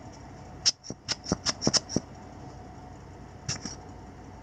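Small handling noises from an action camera and a rubber air-blower bulb being handled: a quick run of about seven sharp ticks within about a second, then two more near the end.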